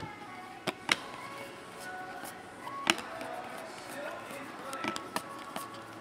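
Panini Prizm basketball cards being flipped through by hand: a few sharp card-on-card snaps, three of them within the first three seconds and two softer ones near the end, over faint background sound.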